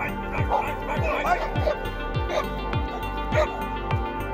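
Background music with a steady beat, and a dog barking repeatedly over it, several barks in the first couple of seconds and a few more later.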